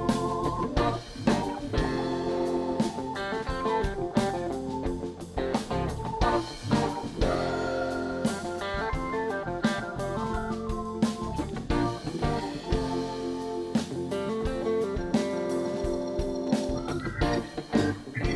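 A live rock band playing an instrumental intro: electric guitar picking quick runs of notes over a drum kit, bass and keyboards.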